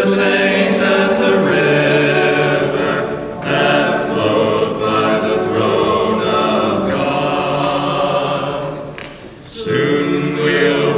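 A choir singing a slow sacred piece in long held chords, with a short break between phrases about three seconds in and another near the end.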